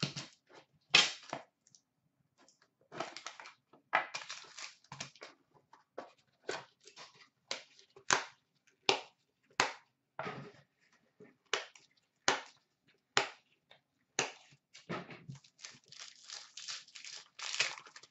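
Foil-wrapped hockey card pack torn open and its wrapper crinkled, after a cardboard card box is slit open, heard as a string of short, sharp crackles and taps.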